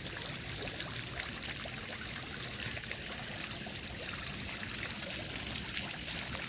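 Water steadily trickling and splashing into a garden pond.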